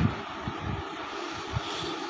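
Steady background hiss with an uneven low rumble: the recording's noise floor, with no voice.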